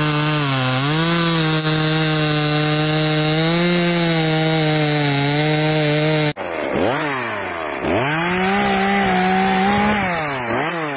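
Echo two-stroke chainsaw running at high revs while cutting down through a wood stump, its pitch steady apart from a brief dip near the start. About six seconds in, the sound cuts abruptly to another chainsaw recording in which the engine speed drops sharply and picks up again twice, then holds high.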